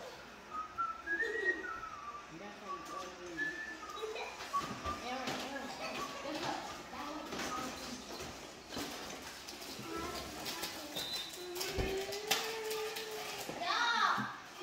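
Indistinct background voices at a low level, with high gliding pitched sounds in the first few seconds and a longer held note near the end.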